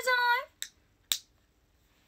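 Two short, sharp clicks about half a second apart, from handling a small white AirPods case and its clip-on holder.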